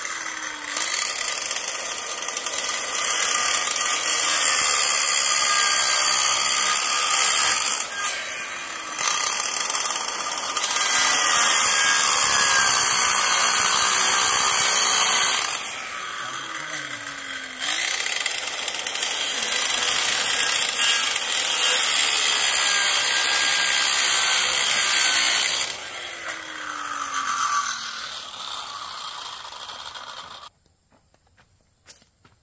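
Handheld electric circular saw cutting through wooden planks in two long, loud cuts. Between the cuts the motor winds down, its pitch falling, about halfway through and again near the end.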